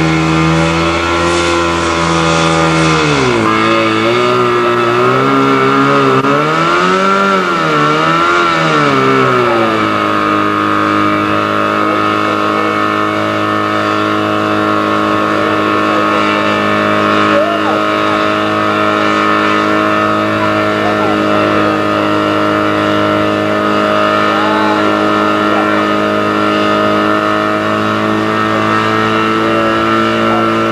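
Fire-pump engine running hard: its pitch wavers up and down for several seconds from about three seconds in as the pump takes up load, then holds a steady high note while it feeds water to the hose lines.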